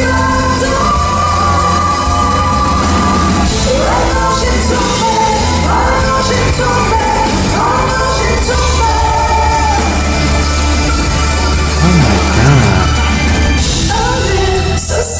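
Live pop-rock performance: a female lead singer with band backing over a steady bass line, a little louder near the end.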